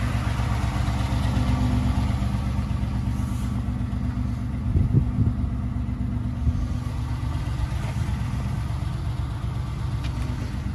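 Ford 5.0 L V8 idling steadily, a low even rumble, with a couple of short knocks about five seconds in.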